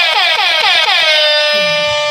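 A loud electronic horn-like sound effect: one pitched tone stuttering in rapid falling chirps, about seven a second, then held steady for about a second before it stops.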